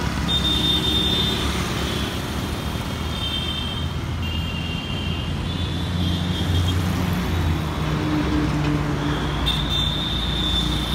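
Road traffic at night: motorcycles, scooters and cars passing with a steady rumble of engines and tyres, swelling a little past the middle. Short high-pitched tones sound on and off over it several times.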